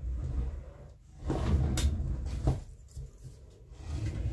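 Handling noise from a person shifting about and reaching down to search for a dropped tarot card: rustling and bumping, with two sharp knocks in the middle.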